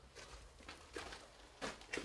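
Faint footsteps on a stone cellar floor: a few scattered steps and scuffs, with a slightly louder one near the end.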